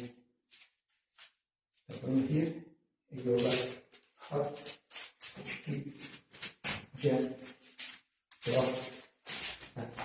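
A man's short, forceful shouts and exhalations, about a dozen in quick succession, as he performs a Krabi Krabong dual-sword form. They start about two seconds in, after a couple of faint ticks.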